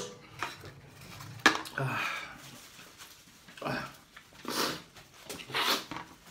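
A man's short, sharp breaths, sniffles and brief pained vocal sounds in a string of separate bursts, a reaction to the burn of Samyang spicy noodles; near the end he sniffs or blows his nose into a tissue.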